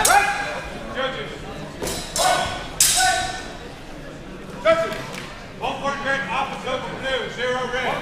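Swords striking in a fencing exchange: a few sharp clashes in the first three seconds, one ringing on briefly, with voices shouting in a large echoing hall.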